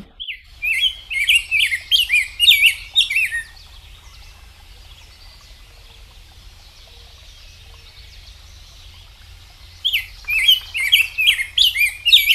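Rose-breasted grosbeak singing, from a recording played over a video call: two bouts of quick, robin-like warbled phrases, the first in the opening three seconds or so and the second starting about ten seconds in, with faint hiss between.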